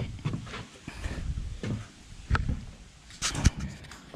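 Corrugated steel door of a shipping container being pulled open by hand: scattered knocks and rattles, with one sharp knock about three and a half seconds in.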